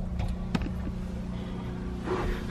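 A steady low mechanical hum over a low rumble, with a single light click about half a second in.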